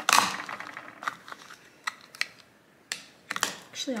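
Makeup compacts clicking and knocking as they are handled and set down on a marble countertop: one sharp knock at the start, then a few light scattered clicks.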